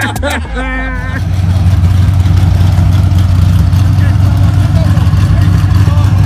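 Car engine running steadily, a loud low rumble that starts about a second in, after a brief burst of speech.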